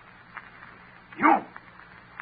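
One short vocal cry, about a second in, over the steady hum and hiss of an old 1930s radio recording.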